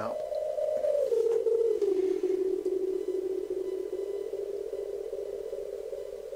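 A Korg Monotron Delay pad sound looped on a Yamaha SU200 sampler: a single sustained synth tone that slides down in pitch between one and two seconds in, then holds steady.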